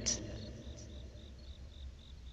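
Crickets chirping softly in an even repeating pulse, about four chirps a second, over a faint low hum.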